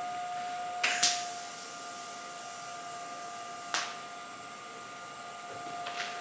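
A welding arc strikes with a click about a second in and runs as a steady hiss for about three seconds before cutting off: a tack weld on the steel tubes of a hardtail chopper frame. A faint steady tone carries on underneath.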